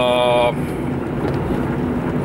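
Steady engine hum and road noise inside a moving car's cabin. A man's drawn-out hesitation sound fills the first half second.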